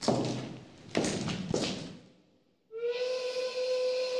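Three sudden crashing hits, one right at the start and two about a second in, each ringing away to quiet. About two and a half seconds in, a held whistle-like tone with overtones starts abruptly and carries on steadily.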